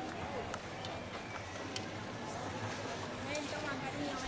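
Indistinct voices and murmur of spectators around a bullring, with a few faint sharp clicks; no single loud event.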